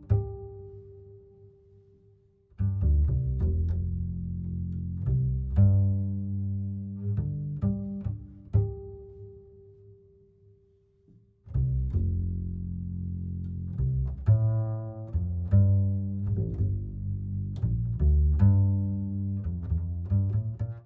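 Instrumental background music in low pitched notes. It fades out and starts again twice.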